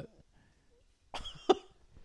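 A short pause, then about a second in a man gives one short, sharp cough-like burst of breath.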